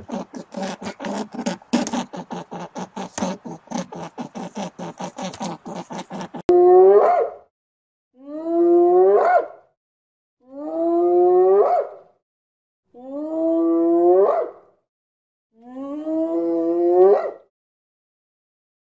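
A fast run of dry clicks, about six a second, through the first six seconds. Then a spotted hyena whooping: five long calls about two and a half seconds apart, each rising in pitch at its end.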